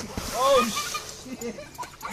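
Water splashing out of an inflatable above-ground pool as a person crashes onto its rim, a rush of spray lasting about a second, with people's voices exclaiming over it.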